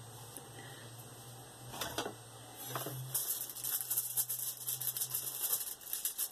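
Crinkling and scraping of a crumpled plastic work sheet as a metal ruler is slid under a polymer clay piece to lift it: a few clicks about two seconds in, then dense, fast crackling from about halfway through, over a faint low hum.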